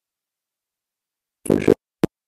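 Near silence on a video-call audio line, then one short burst of noise about one and a half seconds in, lasting under half a second.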